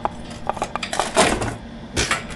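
A quick run of clicks and clatters, thickest in the middle stretch.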